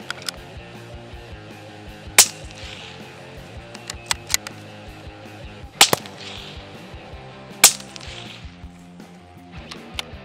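Three shots from a suppressed Tikka T1X UPR rimfire rifle in .17 HMR, each a single sharp crack, a few seconds apart, with fainter clicks between them.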